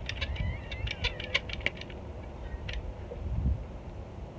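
Caulking gun clicking in a quick run of sharp clicks over the first two seconds as sealant is pumped out along a joint, with one more click near three seconds. Faint chirps and a low wind rumble on the microphone lie underneath.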